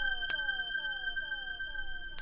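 Electronic synthesizer tones: a steady high tone held under a short bleep that slides downward in pitch and repeats about three times a second, slowly fading out with no beat or bass.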